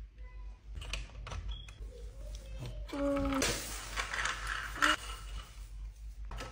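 Light clicks and knocks of small plastic toys being handled on a tile floor, followed by a rustling stretch of about a second and a half past the middle; a child says 'two' about three seconds in.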